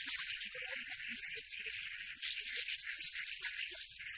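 A rapid, high, buzzy chittering, a cartoon sound effect that goes with the bird on the nest. Short low notes are scattered through it.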